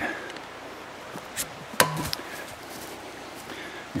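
A thrown axe striking a tree trunk: one sharp thwack about two seconds in, with a short ring after it and a lighter tick just before.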